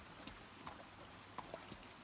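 Hooves of a horse at a slow walk on a wet gravel track: a few faint, irregular clip-clops.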